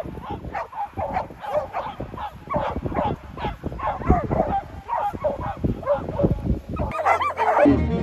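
A large pack of dogs barking, yipping and whining excitedly all at once, many short overlapping calls, as they crowd around a handler holding the lure. Violin music comes in near the end.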